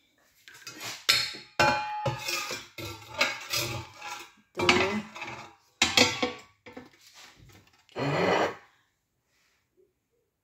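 Kitchenware being handled: an irregular run of clanks and knocks, some with a brief metallic ring, stopping shortly before the end.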